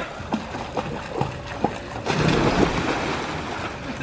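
A person jumping into a swimming pool: a few quick footfalls on the wooden deck, then a big splash about two seconds in, followed by water sloshing as it settles.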